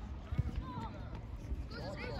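Distant voices calling out across an outdoor football pitch, with a couple of short, dull thuds about half a second in.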